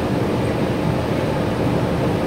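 Cabin noise inside a Gillig BRT clean diesel transit bus: a steady low rumble from the diesel engine and drivetrain, with a faint constant hum.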